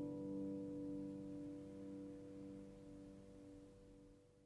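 Harp strings ringing on after a final G major chord, the held notes slowly fading away with no new notes plucked.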